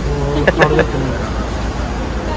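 Voices talking over a steady low rumble in an underground car park, with a couple of short knocks about half a second in.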